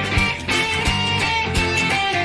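Live rock band playing an instrumental passage: two electric guitars over bass and drums, with a steady beat of about one drum hit every 0.7 seconds and no singing.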